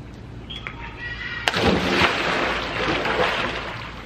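A person jumping into a swimming pool: one big sudden splash about one and a half seconds in, then the water churning and settling.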